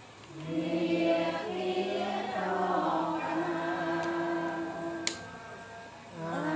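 A Buddhist lay congregation chanting together in unison in long, drawn-out held notes. The phrase starts a moment in and fades near the end. There is a single sharp click about five seconds in.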